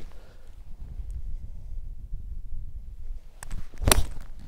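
A golf club strikes the ball from the fairway: one sharp click near the end, after a fainter sound about half a second earlier. Wind rumbles on the microphone throughout.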